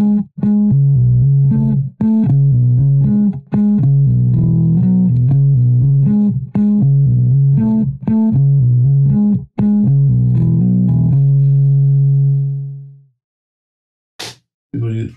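Fender Precision Bass in drop B tuning, played with a pick through a riff of quick notes with pull-offs to the open string and hammer-ons. It ends on a held note that rings for about two seconds and fades out.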